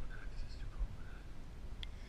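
Faint, low murmured voice close to a whisper, over a steady low rumble of wind on the microphone, with one sharp click near the end.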